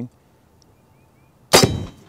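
AirForce Texan .45-caliber big-bore air rifle firing once about one and a half seconds in: a single sharp report that dies away quickly.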